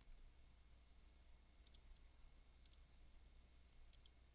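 Faint computer mouse button clicks: three quick double clicks about a second apart, over near-silent room tone.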